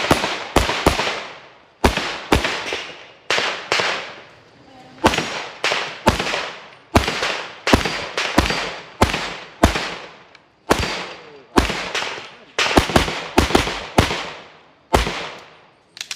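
Semi-automatic pistol firing rapidly during a competition stage: about thirty shots, mostly in quick pairs and short strings with brief pauses between, each sharp crack trailing off in a short echo. The firing stops shortly before the end.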